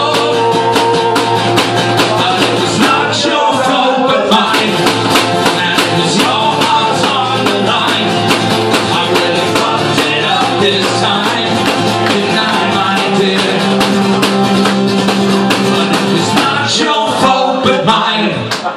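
Live acoustic guitar strummed in a steady rhythm, with a man singing into a microphone.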